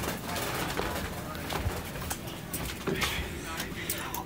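Faint, muffled voices over background noise, with a few soft clicks.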